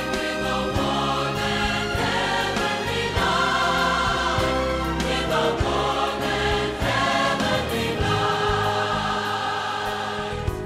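Background music: a choir singing held notes over a steady accompaniment.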